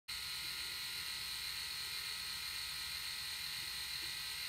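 Phisco RMS8112 rotary electric shaver running with its three heads spinning, a steady motor hum with a constant high tone.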